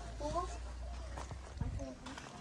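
Faint, indistinct voices talking in the background, with a few short knocks in the second half over a steady low rumble.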